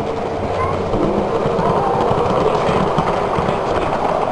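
Model train rolling past close by on the layout track: a steady rumble of wheels with a rapid, irregular clicking over the track.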